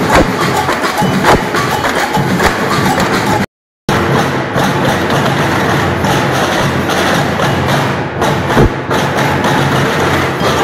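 Street percussion band playing a dense rhythm on snare drum and stick percussion, with sharp woody clicks over the drums. The sound cuts out for a split second about a third of the way in.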